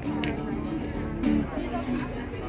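Acoustic guitar strummed, ringing chords in an instrumental passage of a song without singing.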